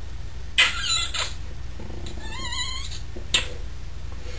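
Cat meowing: one wavering call about two seconds in, after two short sharp noises.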